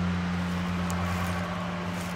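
A steady low hum over an even background hiss, with one faint click about a second in.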